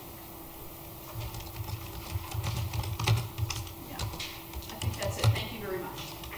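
Irregular quick clicks and light taps, like keys being typed, mixed with soft low thuds. They start about a second in and run on irregularly.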